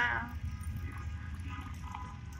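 Low, steady rumble of cars and trucks driving past on the road.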